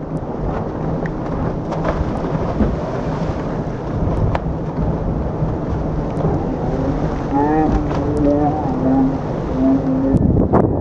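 Boat engine running with a steady low hum under the rush and splash of the wake at the stern, the whole thing rumbling heavily. About three seconds before the end, a man's voice calls out in long, drawn-out sounds.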